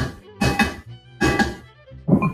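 Wooden spoon scraping round a metal pot, stirring onion and flour, in strokes a little under a second apart, over background music with a violin.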